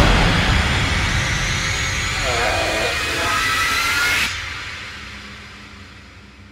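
Horror-trailer sound design: a loud, dense rush of noise with wavering and rising tones over it. It cuts off suddenly a little after four seconds in, leaving a fading tail.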